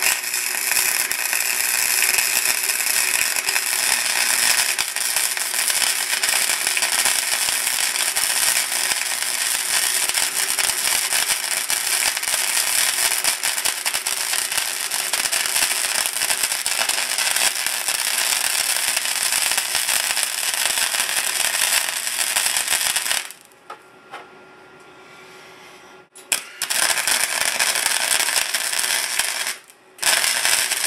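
Electric arc welder crackling and sizzling steadily while a bead is run along a crack in a rusty steel siren horn. The arc stops for about three seconds three-quarters of the way through, then crackles again briefly near the end.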